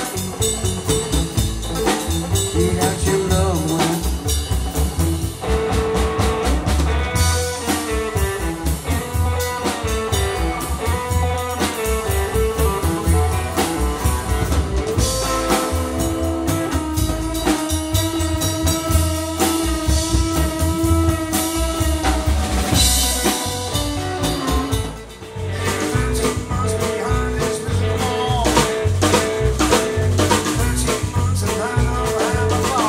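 Live blues-swing band playing an instrumental stretch: guitar lines over a walking upright double bass and a drum kit keeping a swing beat. The music dips briefly in loudness about 25 seconds in.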